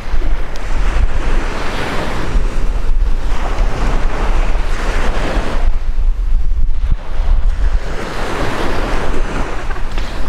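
Small sea waves breaking and washing up a sandy shore, the wash swelling every few seconds, with heavy wind buffeting the microphone as a steady low rumble.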